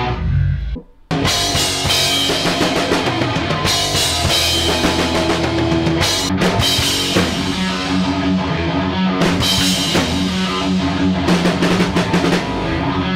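A heavy metal band playing in rehearsal: a rock drum kit with bass drum and cymbals, under distorted electric guitars. The sound cuts out briefly about a second in, then the full band comes straight back in.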